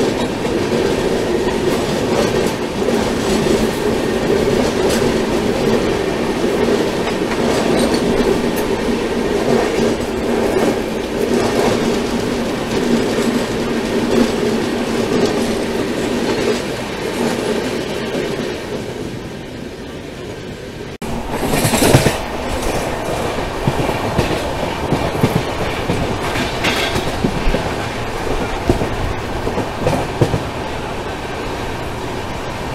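Passenger train running on rails while another train's coaches pass close alongside on the next track: steady rumble and wheel clatter with a steady hum underneath. This fades away about two-thirds through and cuts abruptly to louder train running noise, with a sudden loud rush just after the cut.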